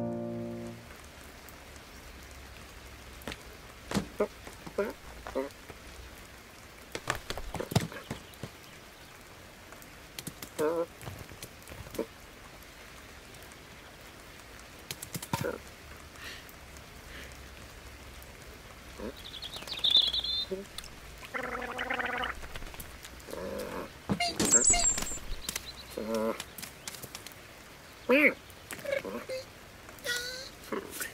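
Cartoon sound effects of light, steady rain with scattered drips, and short cat vocal sounds (mews and grunts), the loudest in the second half.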